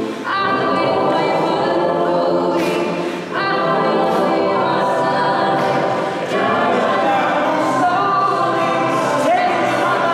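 Mixed-voice a cappella choir singing a gospel-style song in full harmony, without instruments. The singing runs in phrases, with brief breaks about every three seconds.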